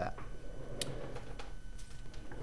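Faint handling noise over a low steady hum, with two light ticks about a second apart.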